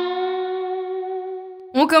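Electric guitar (Fender Stratocaster) played direct through a UAFX amp-simulator pedal: a single sustained note rings out and slowly fades. A woman starts speaking near the end.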